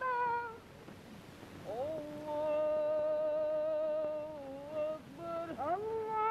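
A man's voice chanting the Arabic prayer in long, drawn-out notes. It dips into a short lull, slides up into one long held note, falls away, and rises again near the end.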